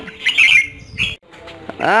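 Caged red-whiskered bulbul giving short harsh calls: a quick cluster in the first half-second and one more about a second in.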